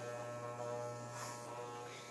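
Corded electric hair clippers running, a steady even buzz.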